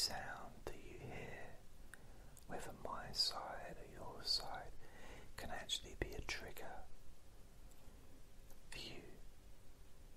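A voice whispering softly in short phrases, with pauses between them.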